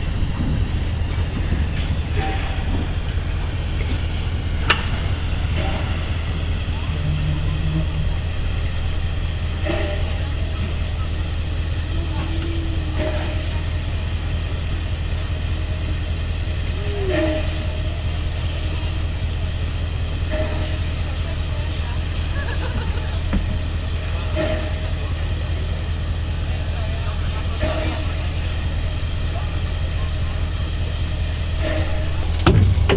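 Steam locomotive SJ E 979 moving slowly at walking pace, with a steady low hum under the hiss of escaping steam.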